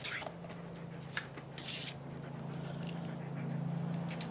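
Soft rustling and a few light clicks from a dog moving right against the camera, over a steady low hum.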